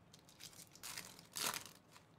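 Plastic foil wrapper of a Topps Big League baseball card pack being torn open and crinkled, in a few short bursts, the loudest about one and a half seconds in.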